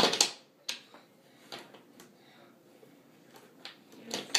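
Toy train cars and a plastic toy car knocking and clacking against each other and the train table as a toddler pushes them about. There is a cluster of loud knocks at the very start, then single knocks every second or so.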